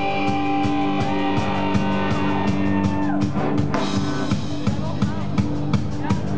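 Live heavy metal band playing: electric guitar and keyboard holding chords over a drum kit. About three seconds in the held chord drops away with a falling glide, and the drum hits grow sharper and more regular after that.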